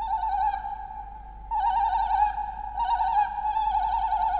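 Live experimental electronic music: a single high held tone that wavers with vibrato. It swells in several pulses over a steadier tone at the same pitch.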